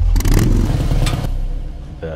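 Harley-Davidson motorcycle engine revving, its low rumble dying away over the two seconds.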